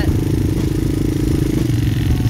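Quad bike engine running at a steady pitch, heard close up, with a droning tone that fades away near the end.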